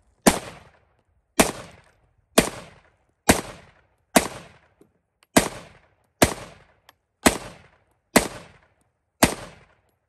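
An AR-10 style .308 semi-automatic rifle firing steel-cased ammunition in steady, deliberate shots. There are ten shots at about one a second, each with a short echo trailing off.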